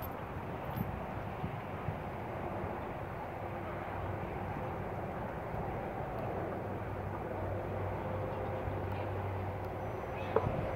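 A steady, low engine drone over outdoor background noise, growing a little louder in the second half.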